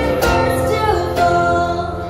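A young female singer performing live with her own acoustic guitar, strumming chords about once a second under the sung melody. One sung note slides in pitch about a second in.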